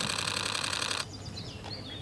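A loud burst of rapid, evenly spaced mechanical clicking lasting about a second, which cuts off abruptly. After it, birds chirp in short falling notes.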